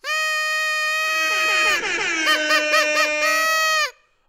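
A loud, horn-like electronic sound effect. A long held note starts suddenly, then wavering, warbling notes play over it from about halfway, and it all cuts off abruptly near the end.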